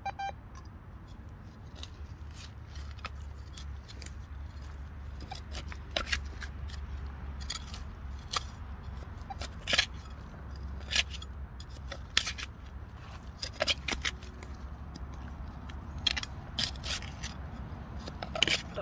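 A metal hand trowel digging into crumbly soil: irregular scrapes and crunches of the blade cutting and levering out earth, getting busier from about five seconds in.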